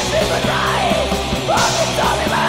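Black/thrash metal music with harsh yelled vocals over the full band.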